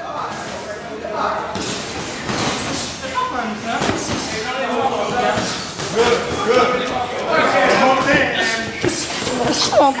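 Several voices talking at once in a boxing gym, with occasional short thuds from sparring in the ring.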